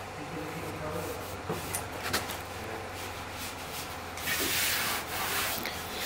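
Rubbing on a car's rear wheel-arch body panel: a few light clicks, then a louder scratchy rub lasting over a second about four seconds in.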